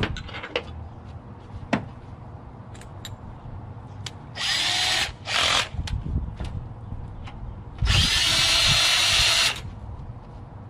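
DeWalt cordless drill/driver run in three bursts while backing screws out of a computer's metal chassis: a short run about four seconds in, a brief one just after, and a longer run of about a second and a half near the end. A few sharp clicks of metal parts being handled come before it.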